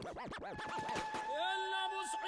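Dance-mix music playback with a DJ-style record-scratch transition: fast up-and-down pitch sweeps, then a held instrument note slides up into place about halfway through as the next track begins.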